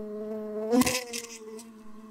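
Buzzing-bee sound effect: a steady insect buzz that swells briefly about a second in, then fades away.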